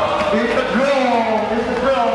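A man's voice talking, with no music playing.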